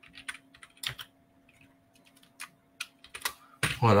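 Typing on a computer keyboard: a string of irregular key clicks, with a pause of about a second in the middle.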